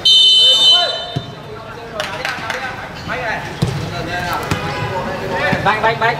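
Referee's whistle blown once for kick-off, a single shrill blast of under a second at the very start. Players' voices shouting on the pitch follow, with a few sharp thuds of the ball being kicked.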